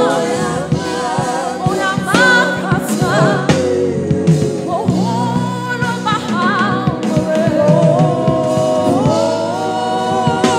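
Live gospel praise singing: a woman's lead voice with vibrato, backed by a small group of singers, over a sustained musical accompaniment.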